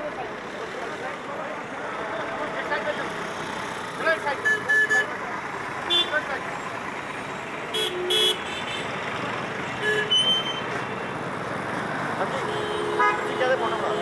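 Street traffic with a steady rush of passing vehicles, cut by short vehicle-horn toots four or five times, and voices.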